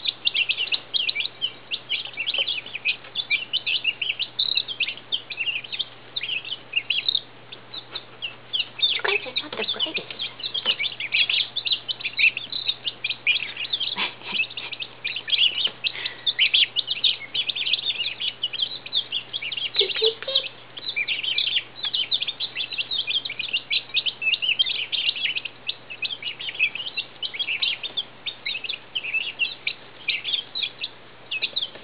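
A brooder flock of newly hatched Midget White turkey poults and Icelandic chicks peeping nonstop: a dense chorus of short, high peeps.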